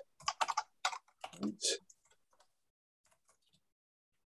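Computer keyboard typing: a quick run of keystrokes in the first two seconds, then a few fainter keystrokes about three seconds in.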